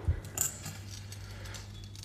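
Light handling clicks and a small metallic clink in the first half-second, over a faint steady low hum.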